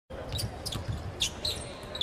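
Basketball game sounds on a hardwood court: several short, high sneaker squeaks and the thud of the ball being dribbled, over steady arena crowd noise.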